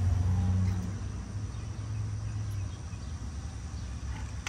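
A low, steady engine hum that starts abruptly and slowly fades.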